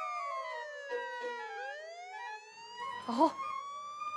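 Police siren wailing, its pitch falling to a low point about a second and a half in and then rising again. A brief vocal sound near the end is louder than the siren.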